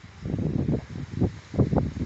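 Wind buffeting the phone's microphone in irregular low rumbling gusts, starting about a quarter of a second in.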